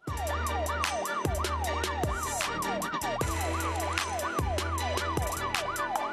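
A siren wailing up and down about twice a second over music with a deep bass and sharp drum hits; both start abruptly.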